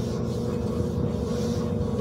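A washing machine running: a steady low rumble with a faint hum.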